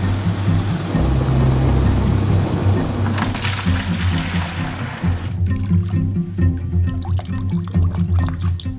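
Background music with steady low notes over a rush of pouring, splashing water from wet recycled-paper pulp being worked by hand. The water stops about five and a half seconds in, leaving the music with a few lighter wet sounds.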